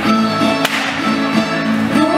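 Traditional Castilian folk dance music with plucked strings, steady and loud, with one sharp click about two-thirds of a second in.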